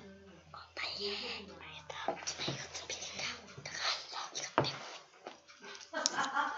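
Quiet, partly whispered speech that is too soft to make out, with a single sharp tap about four and a half seconds in.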